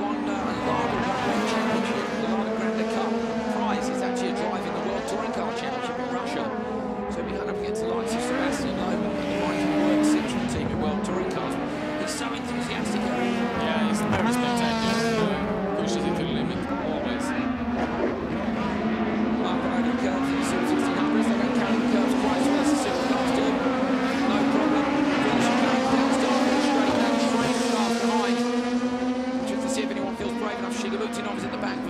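Several Super 1600 rallycross cars racing, their engines rising and falling in pitch with gear changes and corners. Sharp clicks run over the top, and there is some tyre noise.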